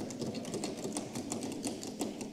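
A rapid, irregular patter of sharp clicks and taps, several a second, over a low murmur in the chamber.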